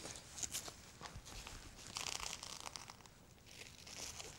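Pelvic binder strap being pulled tight and pressed down to fasten around the hips: faint scratchy tearing and crinkling, in short bursts about half a second in and a longer one about two seconds in.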